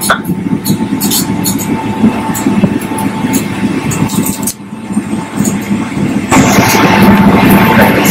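Airliner cabin noise on the ground after landing: the steady rumble of the jet engines and air system, with a faint steady whine and scattered light clicks and rattles. It dips briefly about halfway through and comes back louder and brighter past six seconds.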